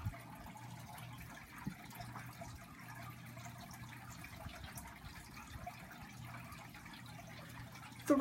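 Faint room tone with no speech: a steady low hum under a light hiss, with a few faint ticks.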